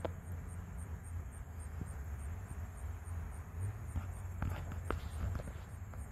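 Outdoor garden ambience: an insect, likely a cricket, chirps faintly and steadily about three times a second over a low rumble. A few short crunches, like steps on wood-chip mulch, come about four and a half to five seconds in.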